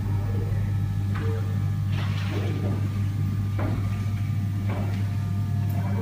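Steady low hum of room noise, with four or five brief, faint sounds rising over it.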